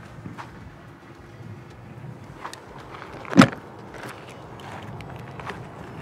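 A few soft footsteps over a low outdoor background, and one short loud thump a little past halfway.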